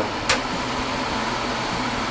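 Suggar Slim range hood's fan running steadily at a high setting: an even rush of air over a low hum. One sharp click sounds about a third of a second in.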